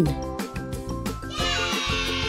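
Upbeat children's background music with a steady beat. About one and a half seconds in, a sparkly sound effect with a falling pitch comes in over it.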